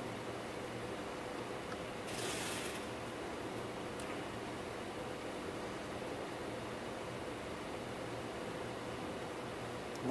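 Steady whir of a running Dell PowerEdge 840 server's cooling fans, with a faint steady hum, interrupted by a brief burst of noise about two seconds in.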